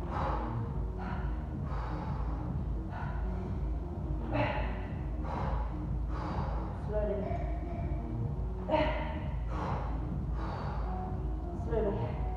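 A woman breathing hard in short, forceful exhalations, about one a second, as she presses a barbell overhead repeatedly.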